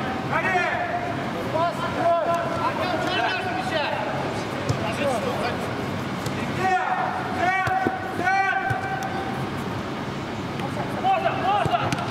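Players' voices shouting and calling to each other during a football game, over the general noise of play, with a few sharp knocks of the ball being kicked.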